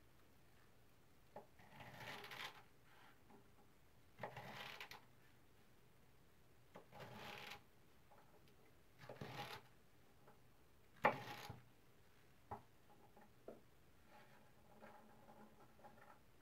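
A freshly sharpened kitchen knife slicing through a bunch of celery stalks onto a wooden cutting board: five faint cuts about two to two and a half seconds apart, each lasting under a second, the last one with a sharper start and the loudest.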